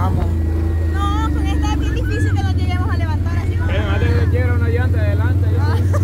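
Can-Am ATV engine running at a steady cruising pace while riding over a dirt track, a constant low drone.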